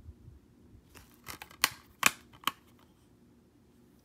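Plastic Blu-ray case being closed and handled: a short rustle, then three sharp plastic clicks in the middle as the case snaps shut.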